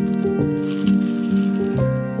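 Dry cat kibble rattling in a plastic scoop as it is scooped from a plastic bin and poured into a bowl, busiest from about a second in. Melodic background music plays over it.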